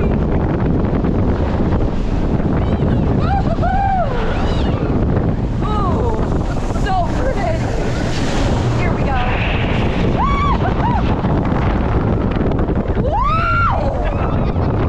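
Wind rushing over the microphone as a riding roller coaster train runs along its track, with riders screaming several times in rising-and-falling yells, the loudest near the end.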